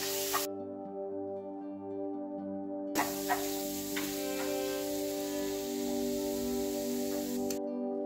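Calm instrumental background music with sustained notes. Under it, a wooden spatula stirs mashed sweet potato frying in ghee in a nonstick pan: a sizzling hiss with a few scrapes, briefly at the start and again from about three seconds in until shortly before the end.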